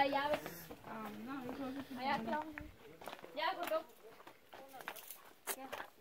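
Quiet speech from voices talking in the background, with a few soft footsteps on a dirt path.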